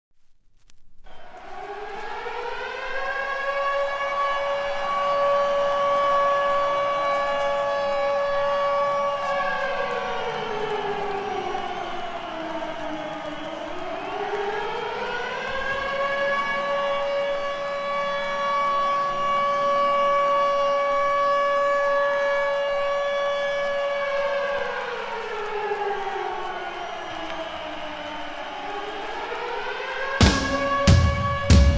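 Air-raid siren wailing in slow cycles: it starts about a second in, winds up to a steady high wail and holds it, winds down around the middle, rises and holds again, then winds down once more near the end and begins to climb.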